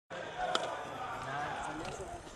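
People talking, with one sharp knock about half a second in.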